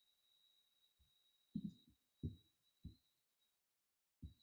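Near silence: faint room tone with a steady high whine and a few soft low thumps.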